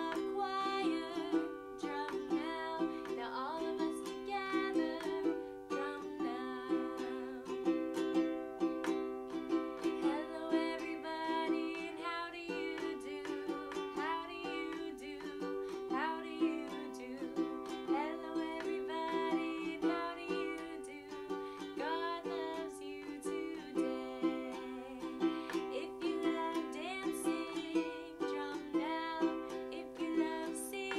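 Ukulele strummed in a steady rhythm of chords, with a woman singing a melody along with it.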